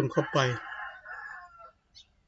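A long bird call in the background, beginning under the end of a man's words, drawn out for about a second and then falling away.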